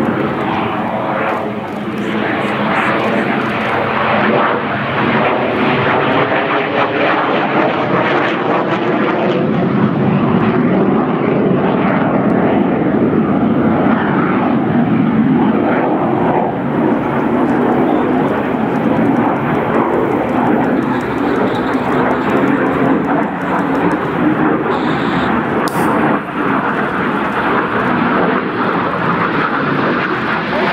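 A Yakovlev Yak-130's twin turbofan engines running loud and continuous as the jet manoeuvres through aerobatics. The jet noise is dense and unbroken, with a wavering pitch in the first half.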